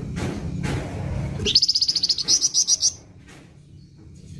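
A caged flamboyan songbird gives a fast, harsh burst of high notes (besetan), about ten a second for roughly a second and a half, starting about halfway in. A low steady hum lies under the first half.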